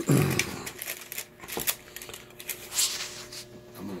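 Handling noise and rustling from a phone camera being moved around, with scattered light clicks. It opens with a short, loud, low burst.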